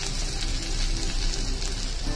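Oil sizzling steadily in a hot wok (kadhai) as chopped ginger, garlic and green chilli fry, with faint background music underneath.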